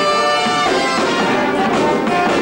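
Band music led by brass instruments, with held notes and chords.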